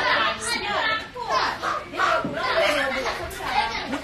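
Speech: people talking, with chatter of several voices in the background.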